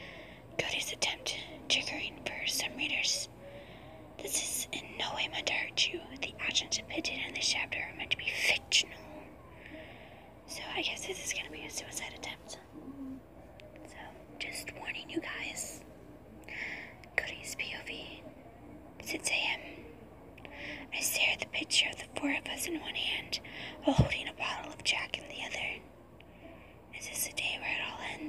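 A person whispering in phrases with short pauses, with a single sharp click near the end.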